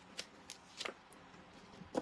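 Faint, sharp clicks, about half a dozen at irregular intervals, with a quick cluster a little under a second in.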